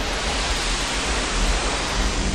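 Synthesized noise swell, an even whoosh-like hiss over a deep rumble, the sound effect under an animated logo intro. Faint steady low tones come in near the end.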